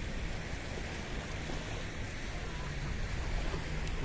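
Steady sea noise from choppy water washing along a rocky shore, mixed with wind rumbling on the microphone; no distinct events.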